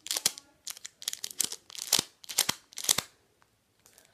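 Foil trading-card packets crinkling in the hands as they are turned and squeezed, in a run of short crackly bursts that stops about three seconds in.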